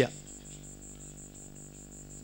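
A high-pitched chirp pulsing evenly about six times a second, over a low steady hum, in a pause between sentences of a talk.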